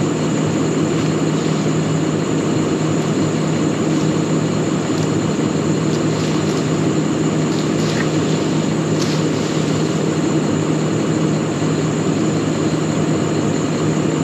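Farm tractor's diesel engine idling at close range, a steady low hum.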